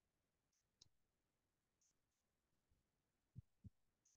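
Near silence with a few faint computer keyboard keystrokes: a sharp click about a second in and two soft taps near the end.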